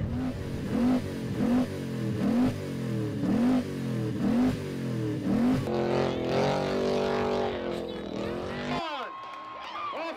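A ute's engine revved hard in repeated short bursts, about one a second, then held at steady high revs before cutting off near the end.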